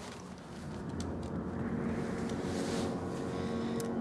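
A low rumbling drone that swells over the first couple of seconds and is joined about halfway by steady held tones: a tense horror-film underscore drone.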